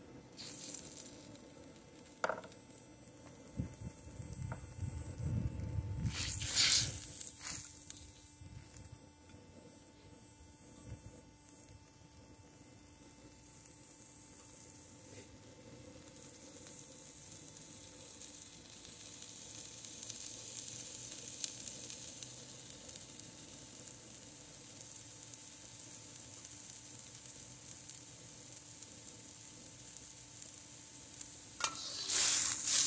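Broccoli florets sizzling in hot oil in a carbon-steel wok, the sizzle building steadily through the second half. There is a sharp burst of noise about six to seven seconds in.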